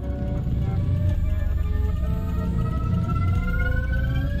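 Tense film score under a standoff: a deep, steady low rumble with several held tones slowly rising in pitch, building suspense.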